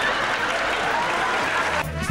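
Large audience laughing and applauding, a dense clatter of clapping with laughing voices through it. It cuts off suddenly just before the end as swing music with brass comes in.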